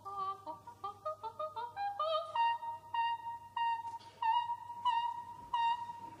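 Operatic soprano singing a coloratura passage. A quick run of short, detached notes climbs over the first two seconds, then one high note is repeated staccato six times, about every 0.6 s.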